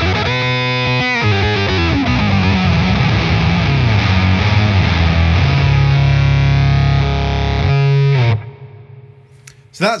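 Electric guitar played through the Redbeard Effects Honey Badger octave fuzz pedal: a gnarly fuzz riff with lower-octave notes blended underneath. It ends on a long held low note that cuts off suddenly about eight seconds in. The sub-octave tracks the playing better than expected.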